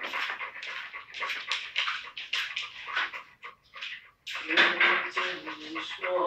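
Yellow Labrador retriever panting rapidly, short quick breaths several a second, then a drawn-out whine about four and a half seconds in.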